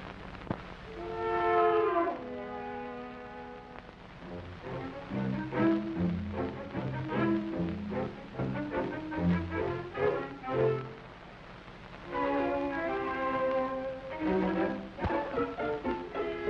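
Film score music: held chords at first, then a bouncy passage of short, even low notes from about five seconds in, and held chords again from about twelve seconds.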